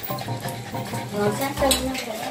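Sounds from a pug dog, heard over background music and people's voices.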